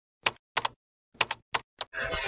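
A quick, irregular run of about seven sharp key clicks, like typewriter keystrokes, with silence between them.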